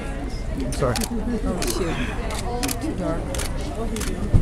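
Several cameras' shutters clicking irregularly, about eight clicks, from press photographers shooting a posed group, over background chatter.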